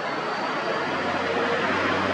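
Steady rumble of a passing vehicle, a low hum that grows a little louder after about half a second and holds.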